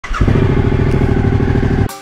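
Suzuki V-Strom motorcycle's V-twin engine running loudly close to the microphone, with a pulsing low note; it cuts off abruptly just before the end.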